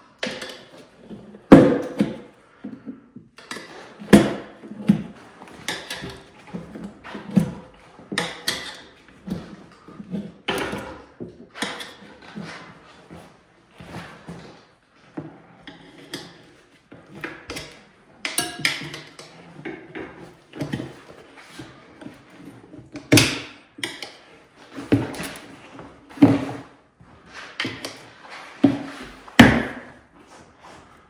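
Tire irons levering a dirt bike tire's bead over the wheel rim: irregular metallic knocks and clanks with short scrapes of the irons against the rim. The loudest knocks come about a second and a half in, about four seconds in, and twice near the end.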